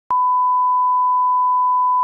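Bars-and-tone line-up test tone: a single steady, pure, high-pitched beep at the standard reference pitch, starting abruptly just after the beginning and held unchanged.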